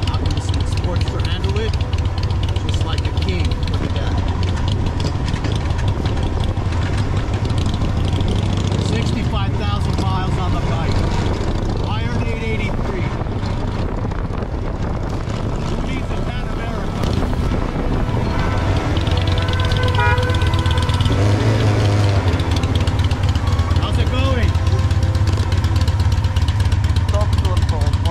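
Motorcycle engine running steadily under way, a low drone with wind and road noise, getting a little louder in the second half. Voices come in briefly several times.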